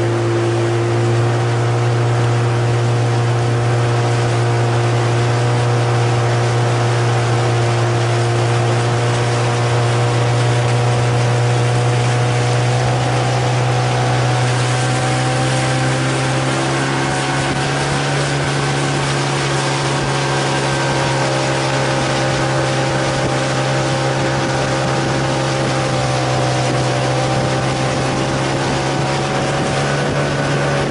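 Motorboat engine running steadily at constant speed, a low hum with a slight change in pitch about halfway through.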